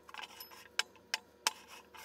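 Glencairn whisky glasses being moved around on a wooden tabletop: a few separate light taps and clinks as the glasses are set down and touch.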